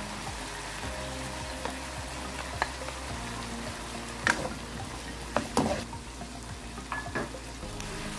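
Diced chicken and mushrooms sizzling in a nonstick wok. From about halfway through, a utensil stirs them, giving several sharp knocks and scrapes against the pan.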